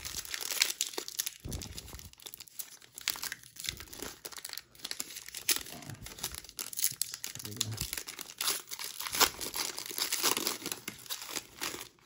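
Foil-lined trading-card pack wrapper being torn open and crinkled by hand: a continuous run of irregular crisp crackles and rips.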